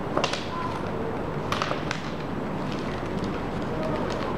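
Zipper on a molded zip-around carry case being pulled open by hand, heard as a few short rasps and handling clicks over a steady hiss.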